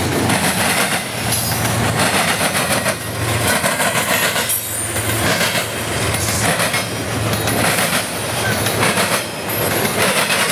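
Double-stack intermodal freight train rolling past at close range: a continuous loud rumble and clatter of steel wheels on rail that swells and dips as each well car goes by, with a few brief high wheel squeals.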